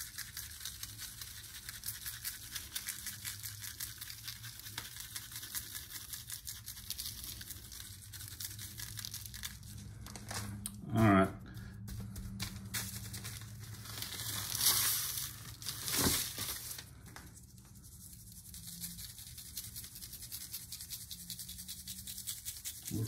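A plastic seasoning packet crinkles as dry rub is shaken out, the granules pattering onto butcher paper and meat. A gloved hand rubs over the paper, with a couple of louder rustles a little past the middle.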